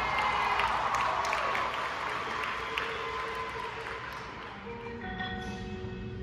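High school marching band playing its show. The full band swells in the first second or so, then thins to a softer passage of held notes, with the front ensemble's marimbas and glockenspiel striking notes over it.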